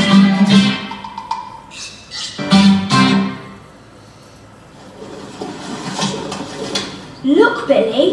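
Plucked acoustic guitar music, a short jingle that stops about three seconds in, followed by a quieter stretch; a voice starts speaking near the end.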